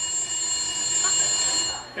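Telephone ringing: a steady, high-pitched electronic ring that cuts off just before the end.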